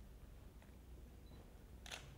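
Near silence: room tone with a low hum, and a single camera shutter click near the end.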